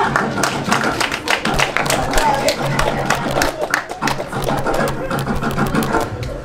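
Many sharp, irregular taps or claps over a steady low hum, with music and voices faintly beneath.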